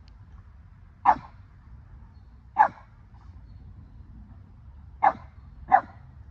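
Boston terrier giving four short, sharp play barks: two about a second and a half apart, then a quick pair near the end.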